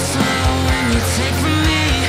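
Heavy metal music playing loud, with distorted guitars, regular drum hits and a gliding sung line.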